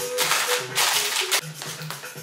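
Bags of Kettle Brand potato chips crinkling and rattling as they are pulled out of a cardboard variety box. There are several loud bursts in the first second and a half, over background music.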